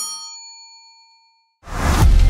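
A bell-like ding rings out and fades away over about a second. Loud theme music with a heavy bass then swells in near the end.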